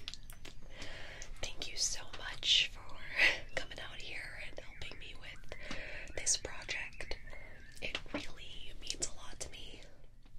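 A woman's soft ASMR whispering, with scattered small clicks.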